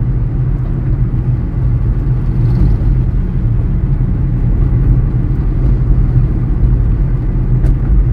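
Steady low road rumble of a car cruising at city speed, heard from inside the cabin.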